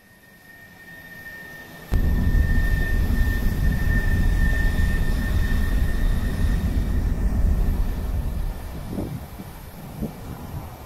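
Road and engine noise inside a moving vehicle: a low rumble that fades up, jumps suddenly louder about two seconds in, and eases off near the end, with a thin steady whine over it.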